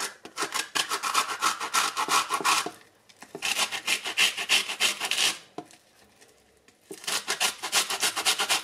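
An orange being rubbed rapidly against the fine side of a metal box grater to take off its zest. The quick scraping strokes come in three runs, with short pauses between them.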